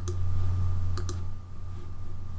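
Computer mouse clicks: one at the start, then two in quick succession about a second later, over a steady low hum.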